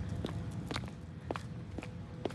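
Footsteps of someone walking on a paved path, about two steps a second.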